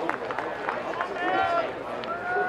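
Players shouting to each other on a rugby league field, with one drawn-out call about one and a half seconds in, over scattered knocks in the first second from boots and bodies on the turf.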